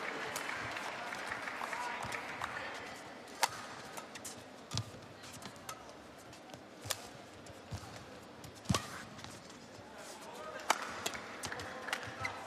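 Badminton rally: racket strikes on the shuttlecock as sharp cracks every second or two, over a hall crowd noise that is louder for the first few seconds and then dies down.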